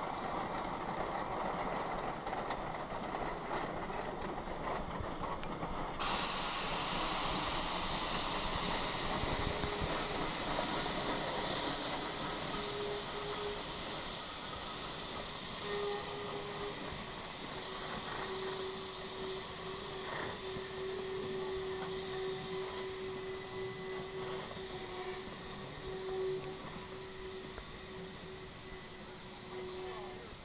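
Geared Shay steam locomotives passing close by, with a loud hiss of escaping steam that starts abruptly about six seconds in and fades away over the next twenty seconds. A faint steady tone runs underneath through the second half.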